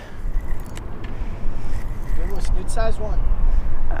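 Spinning reel being cranked while a hooked fish is fought, with a few light clicks, under a steady low rumble.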